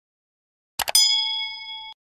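Two quick mouse-click sound effects, then a bright notification-bell chime that rings for about a second and cuts off suddenly: the sound effect of a subscribe button being clicked and its bell switched on.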